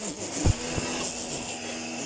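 Steady hum of a pressure washer running while foam is sprayed from its foam-lance gun, with a high spray hiss. Two dull low thumps about half a second and just under a second in.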